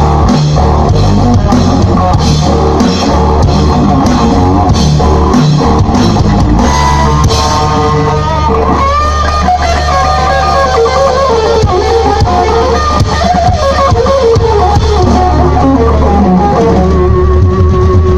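Live rock band playing through a loud PA: electric guitar, bass guitar and drum kit. After about eight seconds the drumming thins out and a lead electric guitar plays bending, sustained notes.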